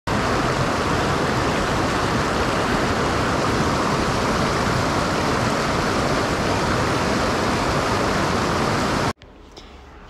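Fast mountain stream rushing and splashing over rocks, a steady loud flow that cuts off suddenly about nine seconds in.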